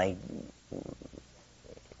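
A man's lecturing voice trailing off on a drawn-out word, then a short pause in a recorded talk with a few faint low sounds about a second in.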